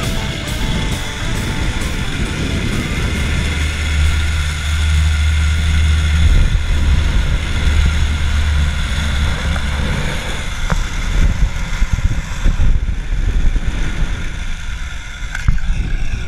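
Zipline trolley running along a steel cable: a steady whir with wind buffeting the camera microphone in a low rumble. A few knocks near the end as the trolley comes in to the landing platform.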